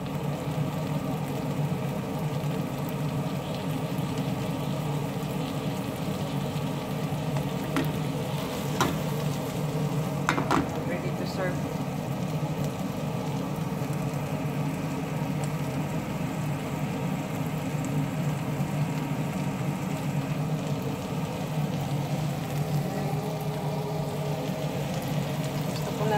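Shell-on shrimps frying in butter in a frying pan, sizzling steadily, with a few light clicks around the middle.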